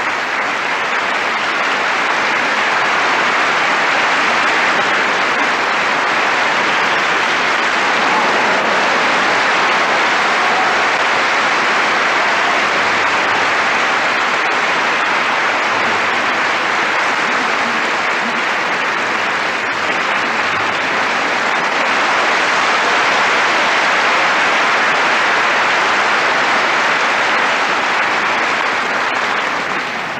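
Concert hall audience applauding: a dense, unbroken clapping that holds steady and then dies away at the very end.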